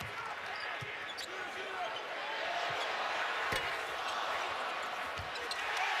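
Basketball dribbled on a hardwood court, a few separate bounces, over the steady noise of an arena crowd.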